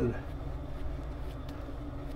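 Shaving brush working lather over the face, a light scratchy swishing, over a steady low background hum.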